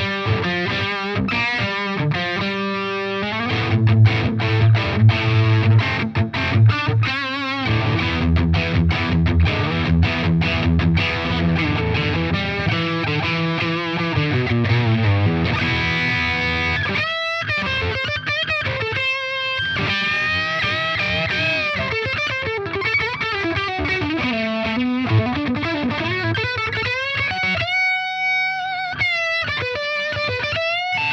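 Electric guitar played through the Flattley Plexstar pedal, a crunchy Marshall plexi-style overdrive. The first half is full chords and riffs with a heavy low end; the second half is single-note lead lines with string bends and vibrato.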